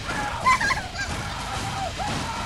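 A rapid string of short honking, goose-like cries, each rising and falling in pitch, with the loudest cry about half a second in.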